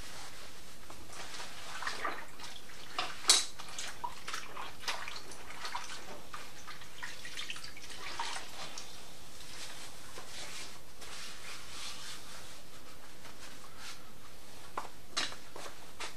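Water splashing and dripping as a wet dyed cloth is rinsed and squeezed in a stainless steel bowl, with a sharper splash about three seconds in and another near the end.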